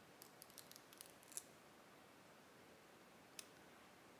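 Near silence with a few faint, short ticks from the protective liner being peeled off the adhesive strip of a tape-in hair extension; the clearest tick comes about a second and a half in, and one more comes near the end.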